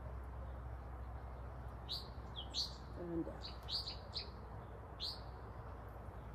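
Small birds chirping: a run of short, high chirps in quick succession from about two to five seconds in, over a steady low hum.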